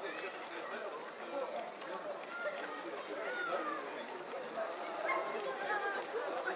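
Footsteps of a large crowd of runners on a wet road, under a steady babble of overlapping voices from runners and onlookers.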